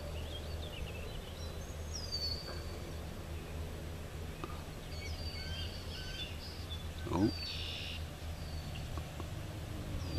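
Birds calling in the trees: short high whistled notes that slide downward every couple of seconds, over a steady low rumble of breeze. About seven and a half seconds in comes a brief high chittering call from the bald eaglet at the nest.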